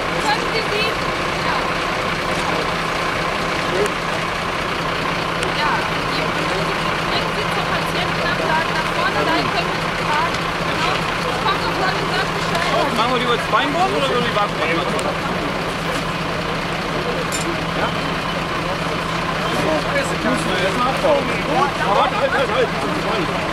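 Indistinct chatter of many voices over a steady low hum of an idling engine.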